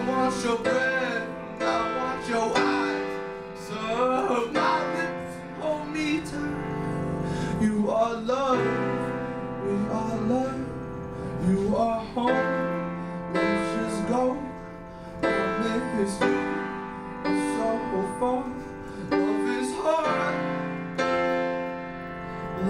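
A man singing a slow song, accompanying himself on a Roland RD-300NX digital stage piano with sustained chords; his voice comes in phrases over the held chords.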